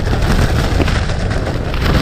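Strong storm wind, around 40 mph, battering a Jack Wolfskin tent, heard from inside: a loud, continuous rough rush with heavy low rumble.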